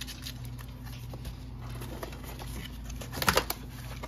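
Hands handling a small cardboard box, its flaps and the paper inside rustling, with a short burst of crackling a little past three seconds in. A steady low hum runs underneath.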